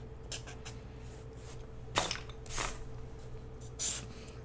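Marker strokes on paper and a paper sheet sliding on a cutting mat: a few short scratchy strokes, the sharpest about halfway through, over a steady faint hum.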